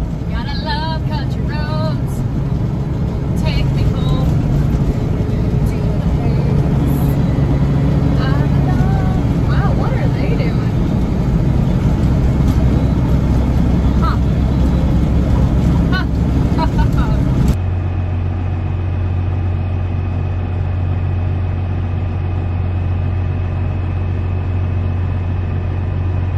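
Semi truck's diesel engine running, heard inside the cab as a low drone whose pitch shifts a few times, with a voice over it in places. About two-thirds of the way through, the sound cuts off suddenly and gives way to a steady low hum.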